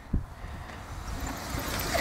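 Low rumble of wind and riding noise on the microphone of a camera carried on a moving bicycle, slowly growing louder toward the end, with one short knock just after the start.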